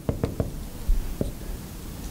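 Dry-erase marker tapping against a whiteboard as a word is written, a string of short, irregular clicks.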